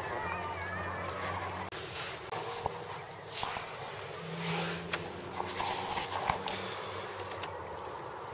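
Quiet outdoor ambience with scattered knocks and rubs from a handheld camera being moved about, and a few faint bird chirps at the start.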